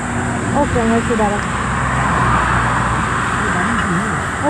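Highway traffic passing close by: a vehicle's tyre and engine rush swells to a peak a little past halfway and then eases off. A steady low hum runs underneath.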